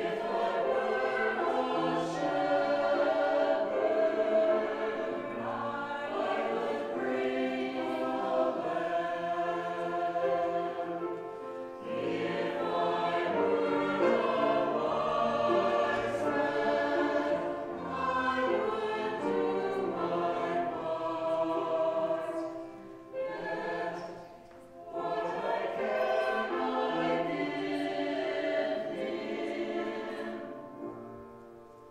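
Mixed church choir singing together, with a short break between phrases about two-thirds of the way through.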